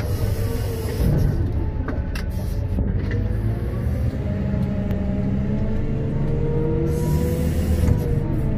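Komatsu WA900 wheel loader's diesel engine running steadily under load, heard from the operator's platform, its pitch drifting slightly as the machine drives. A few light clicks and knocks sound over it.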